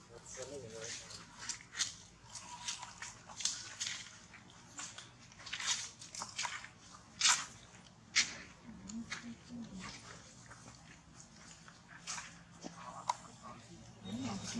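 Irregular sharp crackles and scuffs of dry leaves and dirt being stepped on and disturbed, the loudest about halfway through, with a few brief low murmurs.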